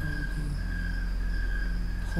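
Steady low droning hum with a thin, held high tone above it, a dark ambient drone that carries on unchanged.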